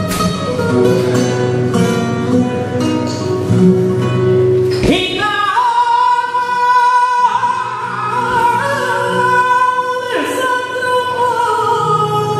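A male flamenco singer performing a granaína, accompanied on flamenco guitar. The guitar picks alone for the first few seconds, then the voice comes in about five seconds in with long, wavering held notes over it.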